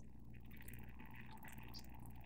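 Faint, steady trickle of mead pouring from a plastic pitcher through a funnel into a glass gallon jug.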